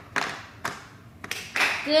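Three sharp, short cracks in the first second and a half, each with a little room echo, then a woman's voice begins near the end.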